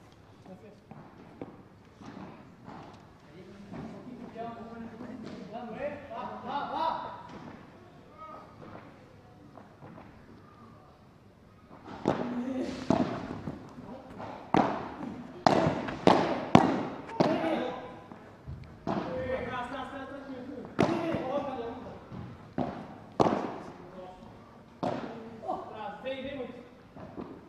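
Padel rally: the ball struck back and forth by padel rackets and bouncing off the court and glass walls, a run of sharp hits often one or two a second, starting about twelve seconds in. Before that, quieter voices in the background.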